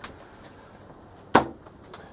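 A single sharp knock, like a hard object set down or bumped, a little past halfway through, with a fainter click near the end.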